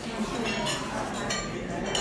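Foil wrapper of a small mint crinkling as it is unwrapped by hand, a few short, crisp crackles.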